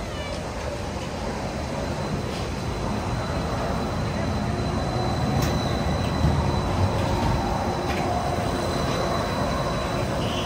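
Disneyland monorail train coming in on its overhead beam: a steady electric hum with a faint high whine, growing gradually louder.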